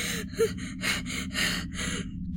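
Rapid, shaky gasping breaths, about three a second, of someone sobbing in terror, over a low steady hum.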